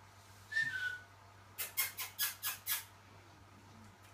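African grey parrot giving a brief falling whistle, then a rapid run of six sharp clicks, about five a second.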